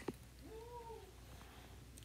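Quiet room tone broken by one faint short call about half a second in, rising then falling in pitch.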